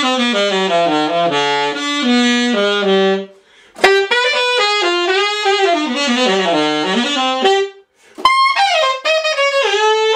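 Series II alto saxophone played solo in three phrases with short breaks between them, running down to the bottom of the horn's range and back up.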